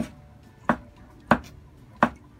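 Kitchen knife chopping soaked shiitake mushrooms on a wooden cutting board: single sharp knocks of the blade on the board, evenly spaced about two-thirds of a second apart.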